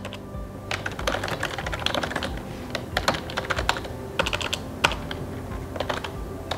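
Typing on a computer keyboard: an irregular, quick run of key clicks as a line of text is entered.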